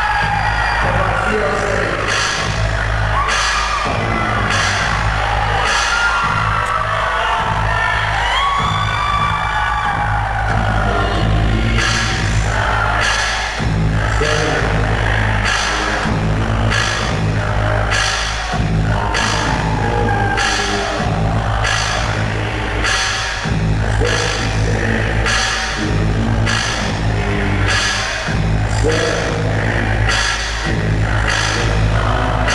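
A live ska/reggae band playing: an even drumbeat, about one hit every two-thirds of a second, over a steady bass line. Wordless vocal sounds glide over the music, mostly in the first ten seconds or so.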